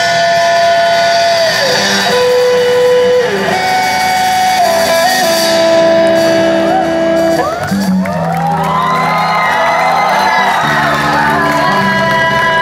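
Live band performance with guitars and a steady low bass line under long held melody notes. About eight seconds in, a cluster of many overlapping wavering high pitches joins the music.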